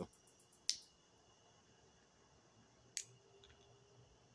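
Lips puffing on a tobacco pipe: two short, sharp smacks about two seconds apart, with a faint steady chirring of insects behind.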